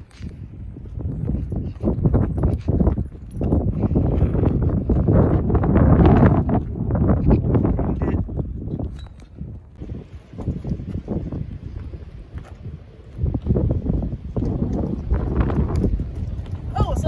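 Wind gusting and buffeting the microphone: an uneven low rumble that swells in gusts, strongest a few seconds in and again near the end.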